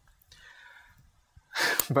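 Mostly quiet, then about a second and a half in a man takes an audible breath that runs straight into speech.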